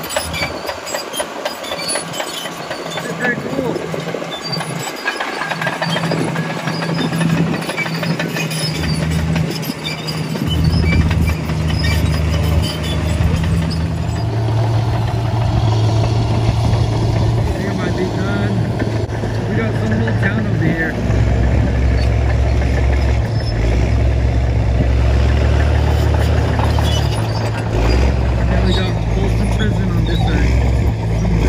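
Diesel engine of a Caterpillar crawler bulldozer running, with its steel tracks clattering as it drives past. The low engine sound becomes louder and steadier about a third of the way in.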